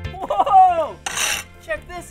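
Long-handled scraper rasping barnacles and seaweed off a boat hull: a short, harsh scrape about a second in. Before it comes a loud falling pitched glide.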